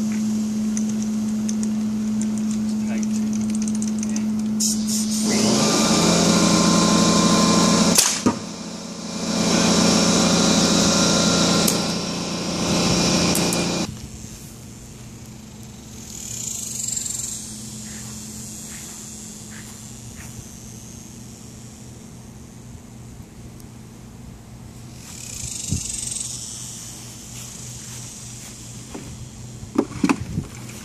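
A line-fed pneumatic marble gun fires once with a sharp crack about eight seconds in. Under it the steady hum of the air compressor feeding the gun runs louder for several seconds around the shot and drops to a quieter hum about fourteen seconds in.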